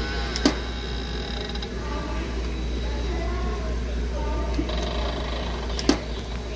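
Store background ambience: a steady low hum under faint distant voices, with a sharp click about half a second in and another just before the end.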